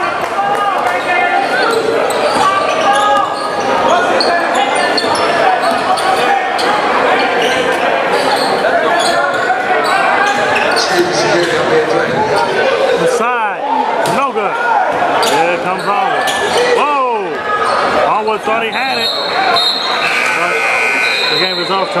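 Basketball game in a gym hall: crowd chatter and shouts, with the ball bouncing on the hardwood court and sneakers squeaking for a few seconds past the middle. Near the end there are short, steady high-pitched tones.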